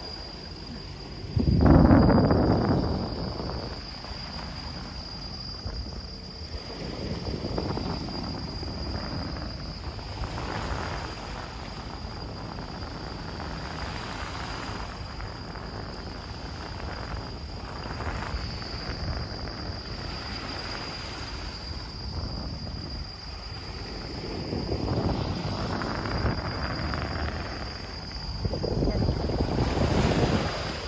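Insects in the seaside trees giving a steady high-pitched drone, broken by gusts of wind buffeting the microphone: a sudden loud one about two seconds in and more near the end.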